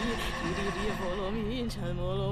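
A woman's voice intoning a long note in a trembling, wobbling pitch, with a low steady drone joining about one and a half seconds in.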